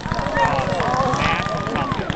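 A fireworks barrage crackling and popping, a dense, rapid run of small bangs with no let-up, with onlookers' voices over it.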